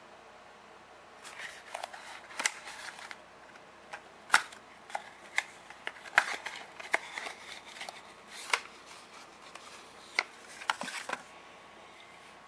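Small cardboard vacuum-tube boxes being handled: irregular rustling of thin cardboard flaps and light clicks and taps, with one sharper knock about four seconds in.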